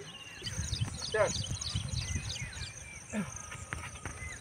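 Small birds chirping in short, repeated high notes, over the low murmur of a group of people's voices; a brief rising call sounds about a second in.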